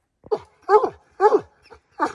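Redbone coonhound barking treed: short barks, about two a second, each dropping in pitch, the bay that tells the hunter a raccoon is up the tree.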